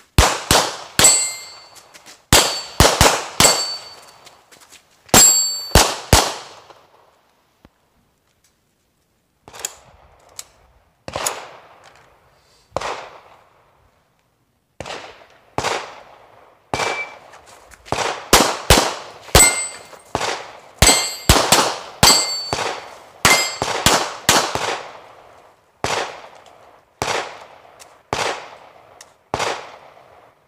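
Sig P320 pistol fired in rapid strings at steel targets, many shots followed by the ring of the steel plates. A short electronic shot-timer beep about 17 seconds in starts a timed string that runs nearly to the end.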